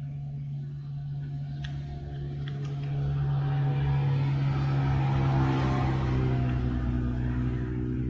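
A low, steady engine hum that grows louder from about three seconds in, holds for a few seconds and fades away near the end.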